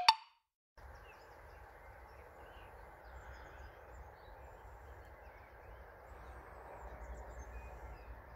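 A brief sharp sound at the very start, then after a short gap a faint, steady outdoor background noise with a few faint bird chirps, growing slightly louder toward the end.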